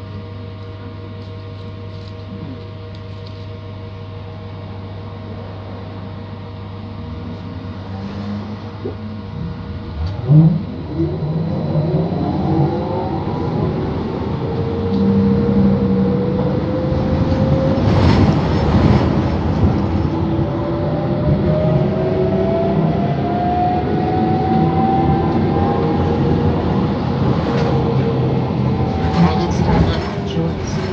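City bus sitting at a stop with a steady low hum, then pulling away about ten seconds in: the drive's whine rises in pitch as the bus gathers speed, with a sharp knock around eighteen seconds in.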